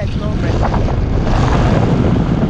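Strong wind buffeting the microphone of a paraglider pilot's camera in flight, a loud steady rush with sudden gusts.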